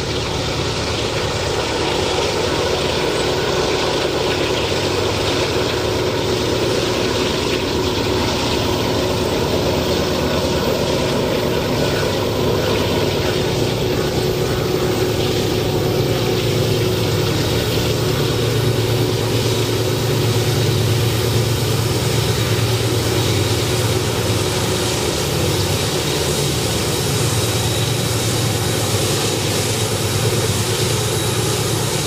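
A pair of GE/Wabtec AC44i diesel-electric locomotives working hard as they haul a loaded ore train up a grade, a steady low engine drone. The drone grows stronger in the second half as the train draws near.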